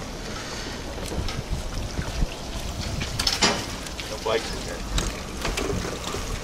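Wind buffeting the microphone of a camera riding on a moving bicycle, a steady rumble with scattered small clicks and rattles; a louder short burst comes about three and a half seconds in.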